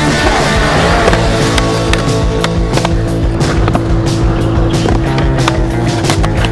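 Skateboard wheels rolling over concrete, with repeated sharp clacks of the board. Loud backing music plays over it.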